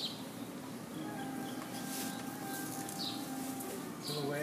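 Quiet outdoor ambience: a faint steady hum with a couple of short high chirps.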